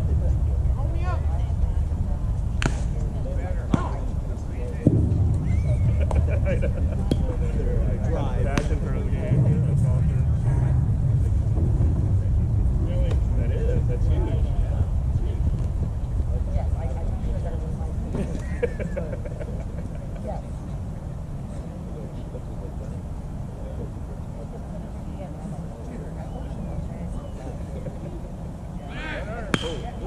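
Steady low rumble of wind on the microphone, with faint, distant voices of players and spectators and a few sharp clicks. About a second before the end, a single sharp crack of the bat hitting the ball.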